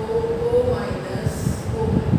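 A woman's voice speaking in drawn-out tones, with short scratchy strokes of a marker on a whiteboard about midway.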